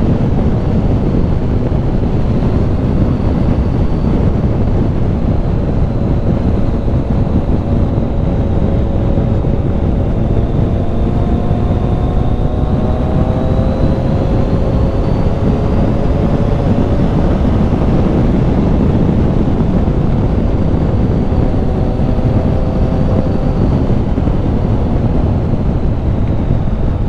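Heavy wind buffeting on a helmet-mounted microphone at road speed, with the 2013 Triumph Tiger 800's three-cylinder engine faintly underneath, its pitch rising slowly as the bike pulls, then again near the end.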